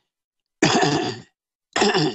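A man clearing his throat: two rough bursts, the first a little after half a second in and the second near the end.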